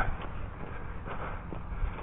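Footsteps walking on concrete pavement, faint and irregular over a low rumble on the body-worn camera's microphone.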